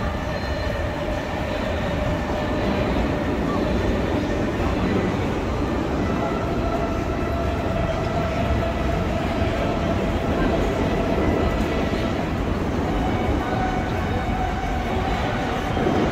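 Steady city street noise: a continuous rumble of road traffic with the voices of a crowd of passers-by mixed in.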